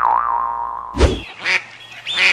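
Cartoon 'boing' sound effect: a springy, wavering tone that fades away over about a second, followed about halfway through by a short burst of noise.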